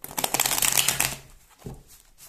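A deck of tarot cards being riffle-shuffled by hand: a fast flutter of card edges falling together for about a second, then dying away.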